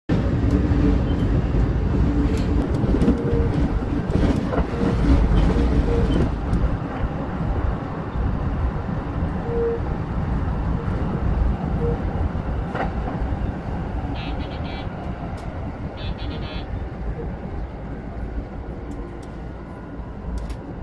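JR East local train running on the rails, heard from behind the driver's cab: a steady rumble of wheels on track with scattered clicks, growing gradually quieter. Two short bursts of high-pitched rapid beeping come in the second half.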